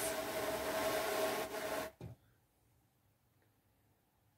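Ashford drum carder being hand-cranked, its carding cloth drum turning and brushing through fibre with a steady whirring, rubbing sound. The sound cuts off suddenly about two seconds in, with one small click after it.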